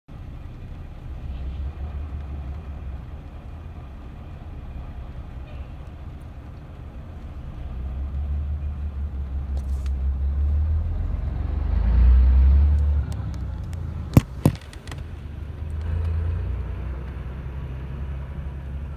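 Low engine rumble of old heavy tractor-trailers, a Ford L-series and a Mack MB cab-over, pulling past, heard muffled from inside a car. The rumble swells to its loudest about twelve seconds in, then eases, with two sharp clicks a couple of seconds later.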